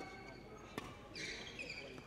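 Badminton rally: a racket strikes the shuttlecock once, a sharp crack about three-quarters of a second in, followed by shoes squeaking briefly on the court floor.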